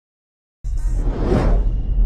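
Silence, then about half a second in a loud whoosh sound effect starts abruptly, rising in pitch over a deep rumble: the opening of an animated logo sting.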